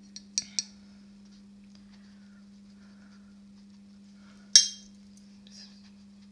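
Paintbrush clinking against a watercolour mixing palette while picking up paint: three light clicks near the start and one sharper clink about four and a half seconds in.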